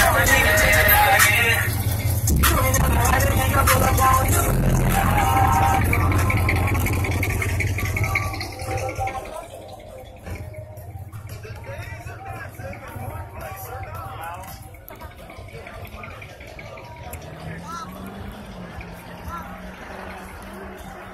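Loud hip hop music with a heavy bass beat and rapping; about nine seconds in it drops away, leaving quieter chatter of people.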